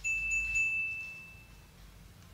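A single high, bell-like ding that strikes suddenly and rings out steadily, fading away over about a second and a half.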